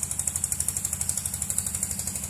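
An engine running steadily in the background, with a rapid even beat of about twelve pulses a second.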